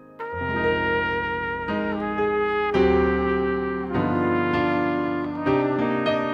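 Trumpet playing a slow melody over digital piano chords and bass notes, the pair coming in together a moment after the start.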